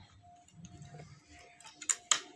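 Clothes being handled on a hanger, with a couple of sharp clicks and rustles near the end as the next shirt is brought up. Under it is a faint low hum.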